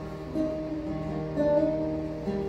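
Acoustic guitar strummed, its chords ringing on with a new strum about half a second in and another about a second and a half in.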